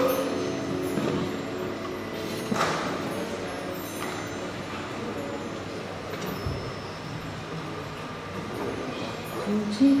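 A lull in a live acoustic set: the last notes fade and the hall is quiet, with faint voices. Near the end an acoustic guitar starts playing again.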